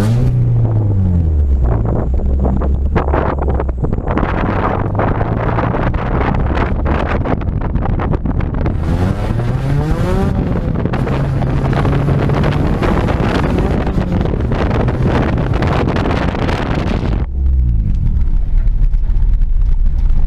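A 1992 Honda Prelude's H23A1 2.3-litre four-cylinder engine revving hard under load off-road. Its pitch falls, then climbs steeply and holds about halfway through, and drops as the throttle comes off near the end. Knocks and rattles from the rough ground and brush hitting the body run throughout.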